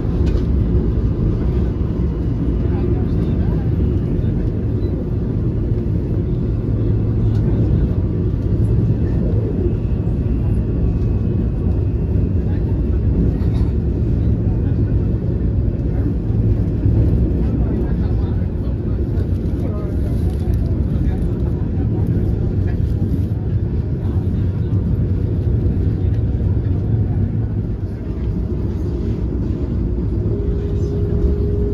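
Steady rumble of a Vande Bharat Express electric multiple-unit train running at speed, heard from inside the coach.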